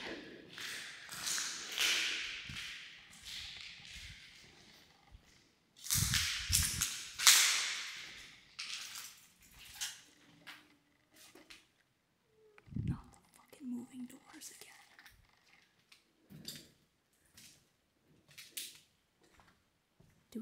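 Footsteps and scattered clicks and crunches of debris underfoot, with two long bursts of hissing noise in the first half and a couple of low thumps.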